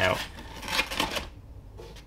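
A stiff sheet of embossed cardboard bubble wrap rustling and scraping as it is handled and slid back into its cardboard dispenser box, dying away about a second in.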